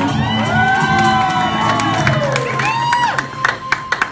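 Audience whooping and cheering, with long rising-then-falling "woo" calls over the fading end of the music. Scattered hand claps follow near the end.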